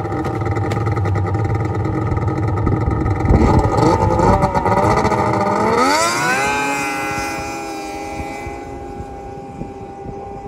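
Yamaha SRX 700 snowmobile's three-cylinder two-stroke engine running steadily, then revving up sharply about six seconds in as the sled launches. It holds a steady high note as it pulls away and fades into the distance.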